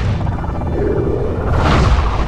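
Film sound design of a torpedo running underwater: a deep continuous rumble with a rushing whoosh that swells near the end.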